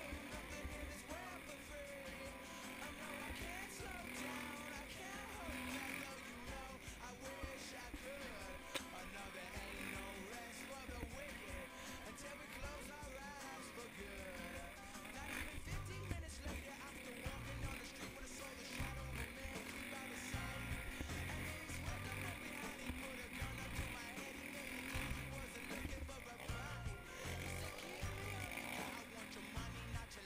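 A song with a sung vocal over a steady beat in the low end; the beat becomes more prominent from about halfway through.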